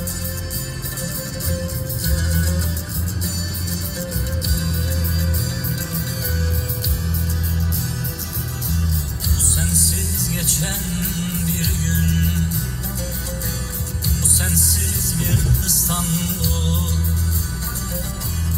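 Instrumental music with a deep bass line that shifts from note to note.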